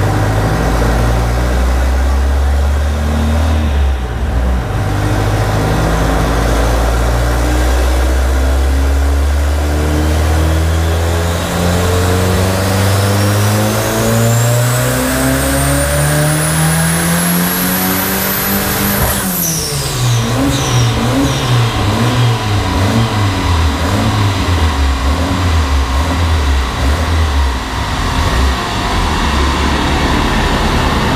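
Modified Volkswagen Gol's engine making a full-throttle run on a chassis dynamometer: it holds low revs, then climbs steadily for about nine seconds with a high whine rising alongside. Near the top it cuts off suddenly, with a few sharp pops, and drops back to an uneven lower running.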